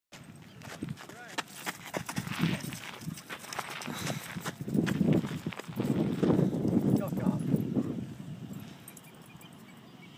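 A dog growling in play, a rough low rumble that builds to its loudest in the middle and dies down near the end, with a few scattered clicks.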